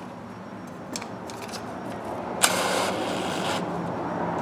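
Keyless chuck of a cordless drill being twisted by hand to clamp a reamer, giving a rough rasping scrape of about a second past the middle.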